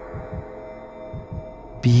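Heartbeat sound effect, soft low beats in lub-dub pairs about twice a second, over a steady held drone of background music.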